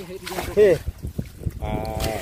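A man's short exclamations, a 'heh' and then a drawn-out 'aah', over faint sloshing and clicking of wet gravel and water shifting in a mesh hand net.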